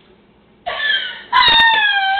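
A girl's high-pitched squeal. It starts with a short cry about two-thirds of a second in, then becomes a loud, held squeal whose pitch wavers.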